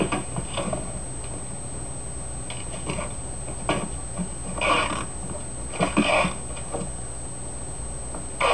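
A person's short breathy snorts, a few of them spaced about a second apart, over a low steady hum.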